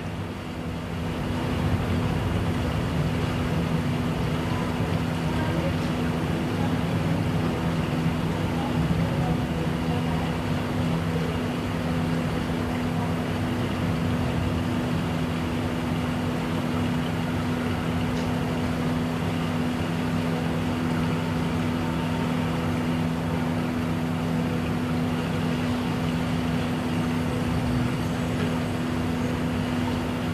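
Steady background hum with a constant low drone, rising over the first second or two and then holding level.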